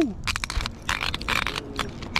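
Spinning reel being cranked while a fish is on the line: irregular clicking and scraping from the reel and rod handling, with a short burst of hiss about a second in.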